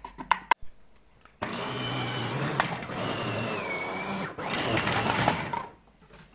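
A few quick knife chops on a wooden cutting board. After a short gap, an electric food processor runs steadily for about four seconds, chopping dry vermicelli. It breaks off briefly once and stops just before the end.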